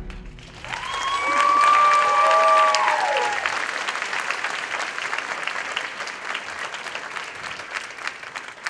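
Audience applauding, with a couple of long cheering whoops in the first few seconds; the clapping slowly thins out.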